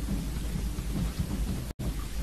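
Steady low rumble with hiss, the background noise of a crowded room picked up by the microphone, broken by a brief dropout near the end.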